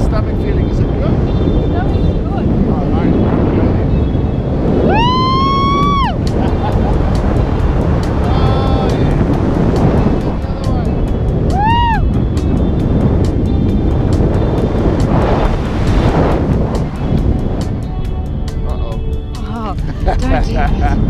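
Wind rushing over a camera microphone during a tandem parachute descent, with a voice whooping twice, once about five seconds in and again near twelve seconds, each call rising and then dropping away. Background music with a ticking beat runs underneath, clearer in the second half.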